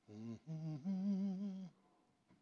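A person's voice from the congregation calling out an answer, faint and drawn out: a short low note, then a higher note held for about a second, wavering in pitch.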